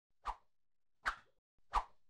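Three short pop sound effects in a motion-graphics title animation, about three-quarters of a second apart.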